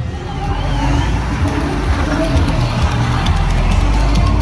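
Music played over loudspeakers from publicity caravan vehicles driving past, with vehicle engine noise underneath, growing louder in the first second.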